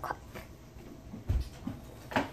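Footsteps walking away across a room: a couple of soft, low thumps over quiet room noise, the clearest about a second and a half in.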